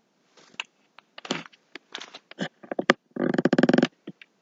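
Handling noises at a craft table: scattered short scrapes and clicks of the brush and the piece on the plastic-covered work surface, then a buzzy rattle lasting under a second about three seconds in, the loudest sound.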